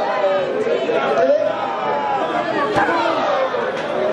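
Crowd of spectators, many voices talking and calling out over one another, with two brief sharp knocks in the second half.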